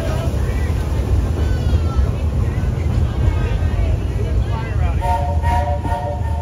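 Narrow-gauge steam locomotive, a 1907 Baldwin, running with a steady low rumble. About five seconds in, its steam whistle sounds a held three-note chord.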